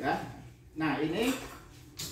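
A man's voice saying a few short words in a room, with quieter gaps between them.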